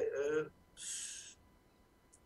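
A woman's voice trailing off, then a short sharp intake of breath about a second in as she pauses mid-sentence, then quiet.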